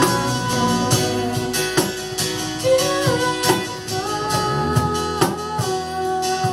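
Live band playing an instrumental break of a worship song: guitar with regular percussive strokes under held melody notes that slide from pitch to pitch.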